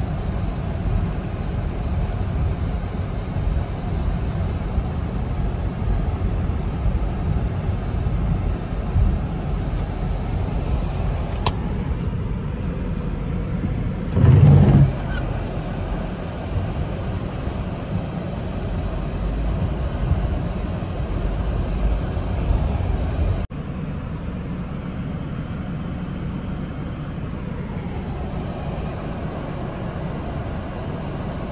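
Steady low rumble of a car driving through flooded streets, heard from inside the cabin: engine and tyres running through standing water. A louder low surge comes about fourteen seconds in, and the level drops suddenly a little past two-thirds of the way through.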